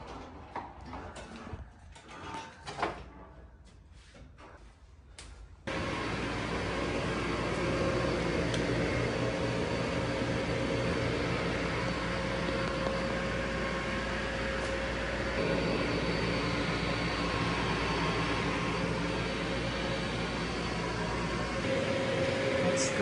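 Water-damage drying equipment running with a steady fan hum and a constant tone: a Phoenix commercial dehumidifier blowing dry air through a plastic lay-flat duct up into the attic. It starts suddenly about six seconds in. Before that there are only a few faint knocks.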